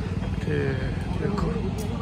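Faint talk from people nearby over a steady low rumble.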